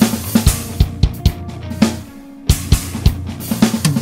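BFD3 virtual acoustic drum kit playing a steady beat of sharp drum and cymbal hits, with a short break a little after two seconds in. The toms' damping is being turned up, so the toms ring out less.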